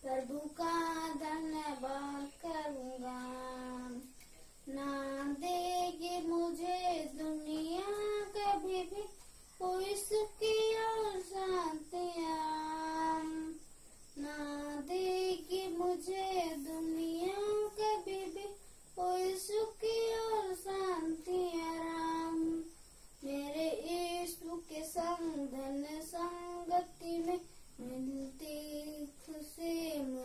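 A boy singing solo with no accompaniment: a melody sung in phrases of a few seconds, with short pauses for breath between them.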